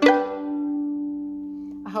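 A violin string plucked once, pizzicato, with the pad of the index finger over the lower fingerboard where the string is less tight, so the note rings on and slowly fades for almost two seconds.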